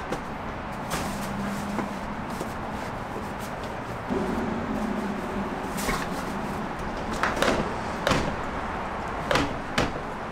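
Knocks and thumps from a plastic deck storage box as bagged kayaks are shoved down inside it, with a run of louder knocks in the last few seconds as its lid is shut.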